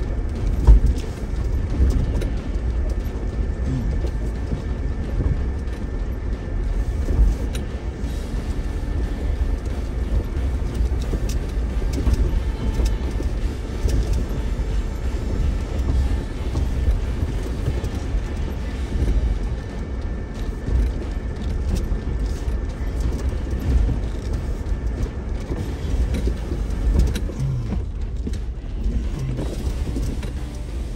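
Off-road vehicle crawling slowly down a rocky trail: a steady low rumble of engine and tyres, with occasional knocks as it rolls over the rocks.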